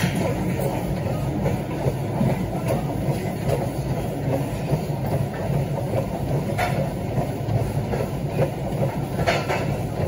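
Treadmill motor and belt running steadily under walking footsteps, giving a continuous low rumble with a pulsing beat. A couple of sharp clinks come through in the second half.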